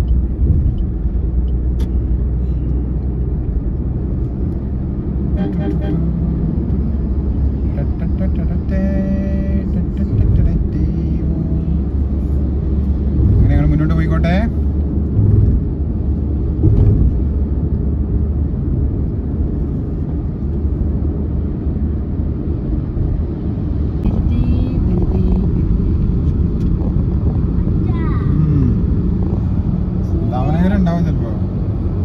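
Steady low road and engine rumble of a car cruising on a highway, heard from inside the cabin.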